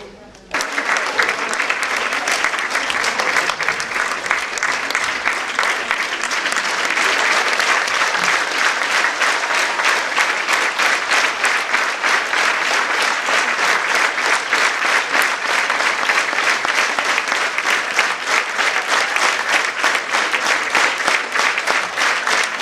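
Large audience applauding: dense clapping that starts suddenly about half a second in.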